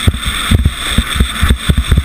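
Skeleton sled running at speed down an ice track, heard from on the sled: a steady hiss of the steel runners on the ice with a dense, irregular string of knocks and jolts, several a second, over a heavy low rumble.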